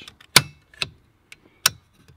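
Toggle switches with flip-up safety covers clicking as they are flipped by hand: two sharp clicks about 1.3 seconds apart, with a fainter click between them.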